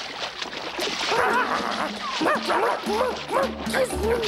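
Squeaky chattering voiced for chipmunk puppets: a run of short squeaks that rise and fall in pitch, starting about a second in. Children's background music plays under them, and its bass line comes in near the end.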